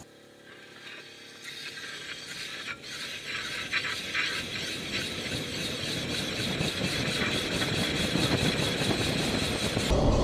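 Electric-converted BMW 320i rolling along and picking up speed: tyre noise on the asphalt and wind grow steadily louder, with no engine note.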